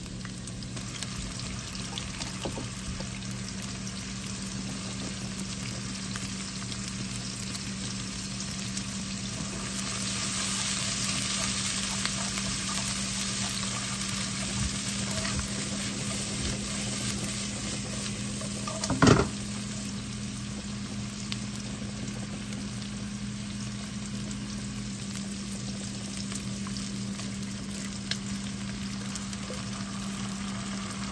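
Onion and shrimp frying in olive oil in a wok on a gas stove: a steady sizzle that grows louder about ten seconds in. A single brief thump comes about two-thirds of the way through.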